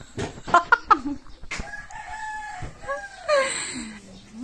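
A rooster crowing once: a long held call that falls in pitch near the end. It follows a few sharp clicks in the first second.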